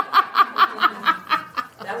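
A woman laughing in a run of quick, even, high-pitched bursts, about four or five a second, dying away near the end.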